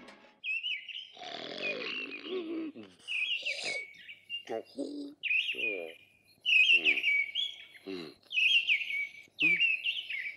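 Small songbirds chirping in short, repeated phrases of high calls that dip in pitch, with brief pauses between phrases.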